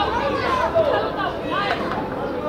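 Several voices talking and calling over one another at a youth football match, the shouts of players and people at the pitch side.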